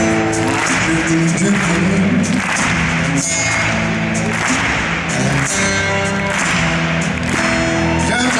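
Live band playing a slow blues instrumental passage: steel-string acoustic guitar over drums and bass, with held notes and regular cymbal strokes.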